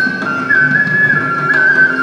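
Kuchipudi dance accompaniment in Carnatic style, led by a flute playing a single high melody that steps from note to note over a lower accompaniment.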